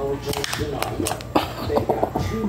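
Polymer magazine of a Tisas PX-9 9mm pistol pushed into the grip, with several sharp clicks, the loudest about halfway through, over a man's voice.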